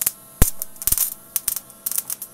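Irregular sharp snaps and crackles from a spark gap in a resonant coil circuit just turned up to 100 watts input, over a faint steady electrical hum. The loudest snap comes about half a second in.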